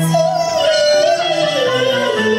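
A woman singing a Cantonese opera line with instrumental accompaniment. She holds one long wavering note that slides down in pitch toward the end.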